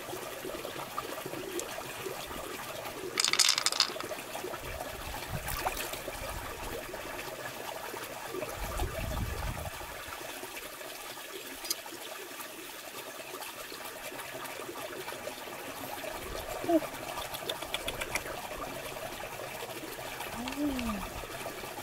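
Steady rush of running water, broken by a few sharp clicks and knocks and a brief louder rattle about three seconds in.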